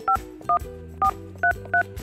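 Touch-tone beeps from a desk telephone keypad as a number is dialled: five short two-tone key beeps, roughly two a second, over quiet background music.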